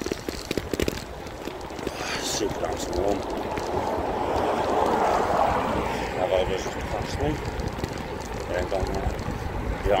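Wind buffeting a phone's microphone outdoors: a rushing noise that swells about halfway through, over a low rumble that grows toward the end.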